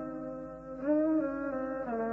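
Live acoustic jazz trio music: a single sustained melodic line that holds notes and slides between pitches, one slide coming a little under a second in.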